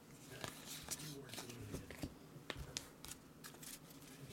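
Trading cards being handled and flicked through by hand: faint, irregular small clicks and rubs as the cards slide over one another.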